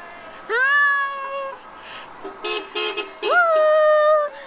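Two long, high-pitched cheering calls, each rising at the start and then held, from people greeting a passing car parade. Between them comes a quick run of three or four short car-horn toots.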